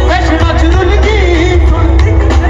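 Live Punjabi pop music from a band with drum kit and heavy bass, a male vocalist singing a wavering, ornamented line over it.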